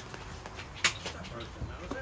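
Handling noise from a large cardboard box being moved about in a van's cargo area: quiet scuffing, one sharp click about a second in and a couple of low knocks near the end.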